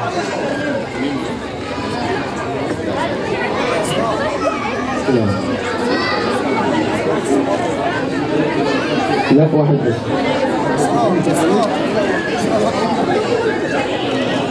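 Crowd chatter: many voices talking over one another, with no single voice standing out.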